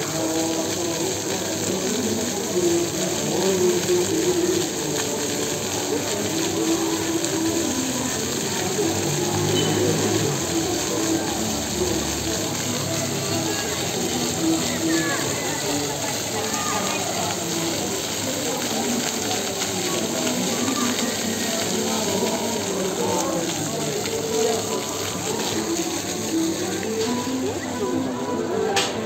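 Steady splashing rush of a square's fountain water jets, mixed with the indistinct chatter of many people.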